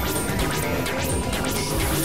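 Harsh experimental noise music from synthesizers (a Novation Supernova II and a Korg microKORG XL): a dense, loud wash of noise with quick sweeping, crash-like hits several times a second over a thin steady tone.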